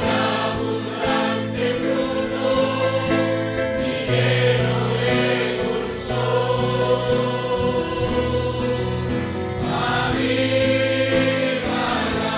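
A congregation singing a Spanish-language hymn together, many voices holding long sustained notes.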